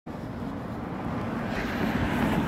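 Steady low rumble of outdoor street noise, slowly growing a little louder.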